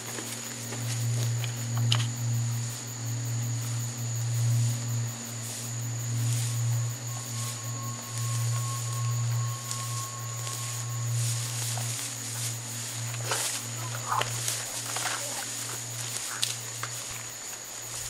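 A low droning rumble that swells and fades in slow waves, with a few short sharp cracks near the end.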